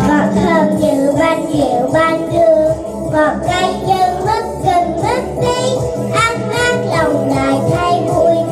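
Young girls singing into microphones over instrumental accompaniment with a steady beat.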